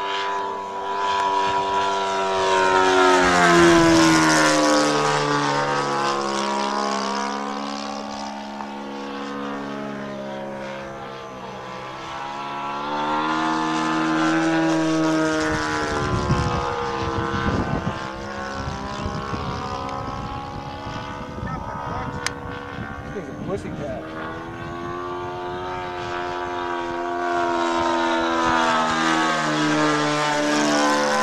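Engine of a radio-controlled scale warbird model running in flight as the plane makes several passes. Its pitch drops as the plane goes by and rises as it comes back. It is loudest about four seconds in and again near the end.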